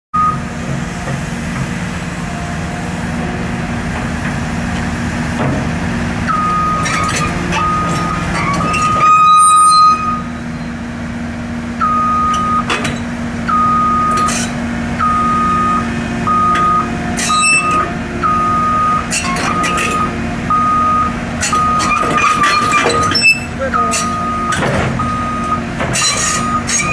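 Caterpillar 319D LN excavator's diesel engine running steadily, with scattered sharp metallic clanks and a loud noisy burst about nine seconds in. From about six seconds in, a travel alarm beeps about once a second.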